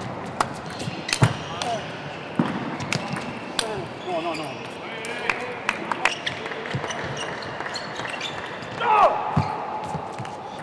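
Table tennis ball clicking sharply off the bats and the table in short, separate strokes, the loudest about a second in. A voice calls out loudly near the end.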